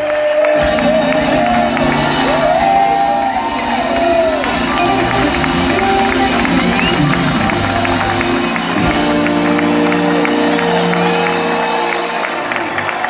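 Live band music from a concert stage, electric guitar, drums and keyboards, with a large crowd cheering over it.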